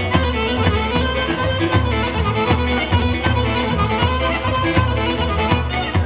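Live Pontic Greek dance music, instrumental: a melody over electronic keyboard accompaniment with a steady, repeating low drum beat from the daouli.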